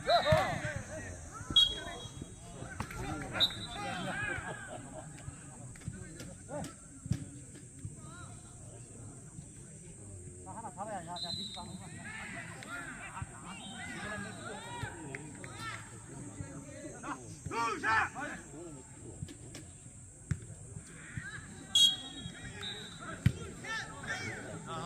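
Voices of players and onlookers calling out around an outdoor jokgu court, in scattered bursts, with a few sharp knocks of the jokgu ball being kicked.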